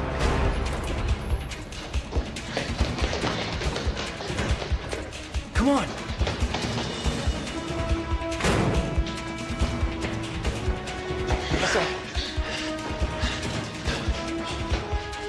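Tense action score with a fast, driving percussion beat under sustained tones, swelling twice into rushes of noise about eight and a half and eleven and a half seconds in.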